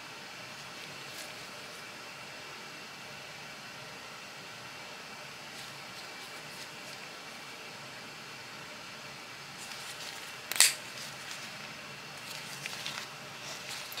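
A single sharp snap about ten and a half seconds in, as the Protech Terzuola ATCF automatic knife's spring-driven blade fires open at the press of its button. Around it, low room noise with a few faint handling ticks.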